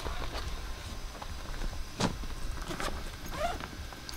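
Scattered light clicks and knocks of people moving about and handling gear, with a sharper click about two seconds in, over a low steady rumble.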